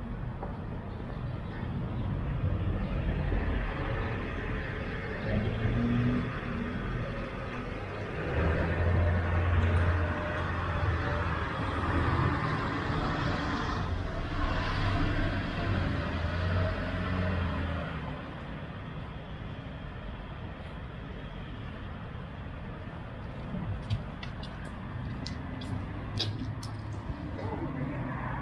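City street traffic: a motor vehicle's engine running close by with a low hum, building and loudest from about eight to eighteen seconds in, then falling away to quieter steady street noise.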